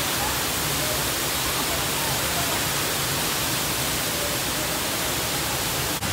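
Looking Glass Falls, a waterfall plunging off a rock ledge into its pool, making a steady rushing noise.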